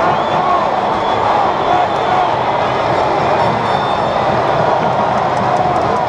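Stadium crowd in the stands: a steady, loud din of many voices.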